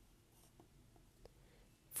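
Faint sound of a pencil writing shorthand outlines on ruled paper, with a few light ticks as the strokes are made.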